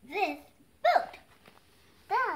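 Two short, high-pitched vocal yelps about a second apart, each rising and then falling in pitch.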